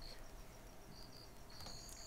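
Quiet background with a few faint, short, high-pitched insect chirps scattered through it.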